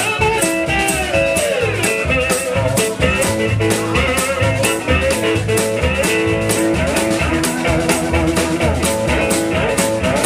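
A blues trio playing live: guitar with gliding, bent notes over an upright double bass line and a drum kit keeping a steady beat, cymbal strokes about four a second. No singing.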